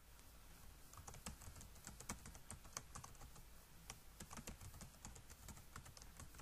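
Faint typing on a computer keyboard: a run of irregular key clicks as a password is typed into two fields, the password and its confirmation.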